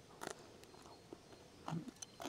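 Faint biting and chewing of a juicy, succulent chandelier plant (Kalanchoe delagoensis) leaf: a few short crunches, one about a quarter second in and a small cluster near the end.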